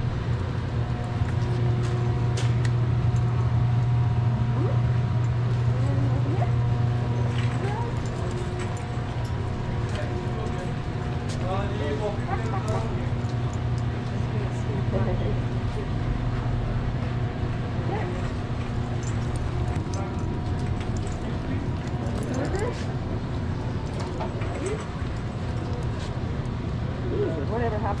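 Supermarket background noise: a steady low hum with a few faint steady tones above it, and indistinct voices of other shoppers now and then.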